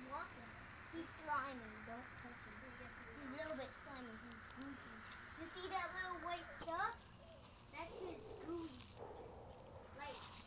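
Faint voices talking in the background, with a faint steady high hiss that cuts off about nine seconds in.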